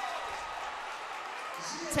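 Spectators applauding and cheering in a large indoor track arena: a steady spread of crowd noise with no single sound standing out.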